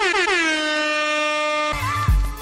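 DJ-style air horn sound effect: one long blast that slides down in pitch at the start, then holds a steady note for over a second before cutting off.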